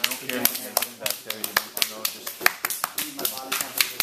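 Hands slapping and patting tanning cream onto bare skin: quick, irregular sharp slaps, about three or four a second, over people talking.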